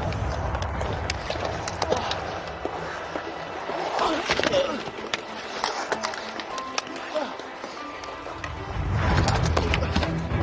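Ice hockey game action: skates scraping the ice and many sharp clacks of sticks and puck over arena crowd noise, with music underneath. The noise grows louder near the end as play piles up at the net.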